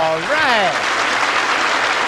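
A man's held sung note ends with a short rising-and-falling vocal slide, as a studio audience breaks into applause that fills the rest of the moment.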